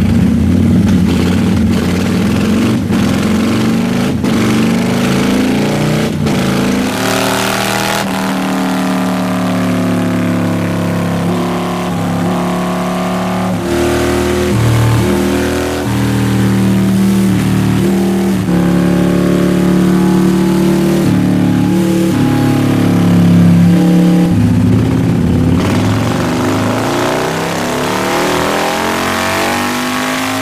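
Harley-Davidson Milwaukee-Eight 114 V-twin, fitted with a 002 cam and a Dr. Jekyll & Mr. Hyde slash-cut variable exhaust, running and being revved. The engine note holds steady, then jumps up or down every second or two, with revs rising and falling near the end.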